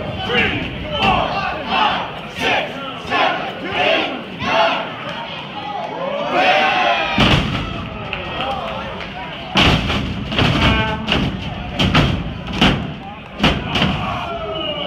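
Spectators shouting and calling out at a wrestling match, with heavy thuds of bodies and strikes landing in the ring: one big impact about halfway through, then a run of sharp hits in the last few seconds.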